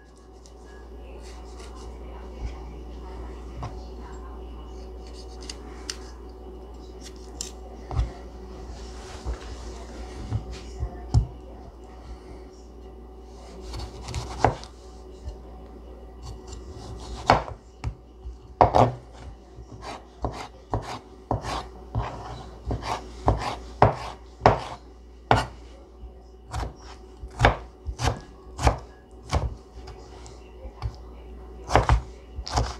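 Chef's knife cutting a tomato on a cutting board. In the first half there are a few scattered slicing knocks. From a little past halfway the knife strikes the board in a steady chopping run of about two strikes a second, and these are the loudest sounds.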